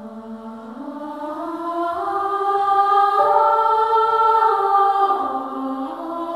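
Background music: a choir singing slow, held chords that swell louder over the first few seconds.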